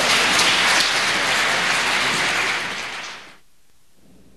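Audience applauding, dying away about three seconds in.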